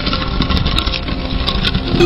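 A loud, steady, low rumbling sound effect with a few faint high ticks over it.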